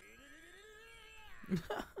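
A long, meow-like cry from the cartoon soundtrack, its pitch rising and then falling over about a second and a half; laughter breaks in near the end.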